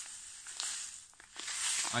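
Dry couscous poured from its packet into a crisp tube: a steady hiss of trickling grains with small ticks, thinning out about a second in, then a brief rustle near the end.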